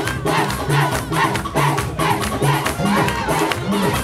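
Live church praise music, with a repeating bass line and steady percussion, under a crowd singing and shouting along.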